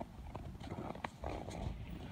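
Footsteps crunching in snow at a walking pace, several crunches over a low rumble.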